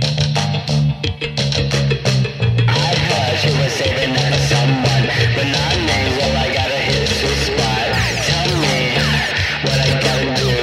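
Post-punk band recording: electric guitar and bass guitar over a steady bass line, the sound thickening sharply into a dense full-band mix about three seconds in.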